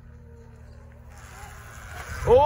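Sur-Ron electric dirt bike riding on a dirt track, heard as a faint steady hum over a low rumble, with tyre and wind noise building over the second half.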